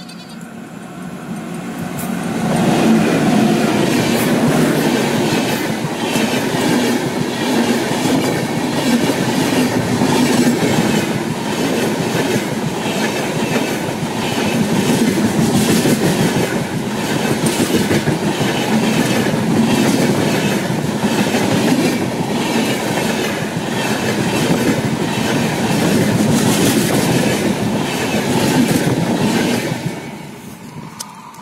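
A WAP-5 electric locomotive and its train of passenger coaches pass close by at speed. The sound builds over the first two seconds as the locomotive arrives. It then holds as a loud, steady rush with a rhythmic clickety-clack of wheels over the rail joints, and falls away sharply near the end as the last coach goes by.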